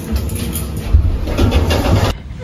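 Elevator car in motion: a loud low rumble with some light rattling.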